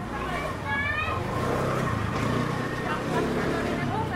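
A motor scooter's small engine running as it comes up the narrow lane toward the listener, over people's voices and street chatter.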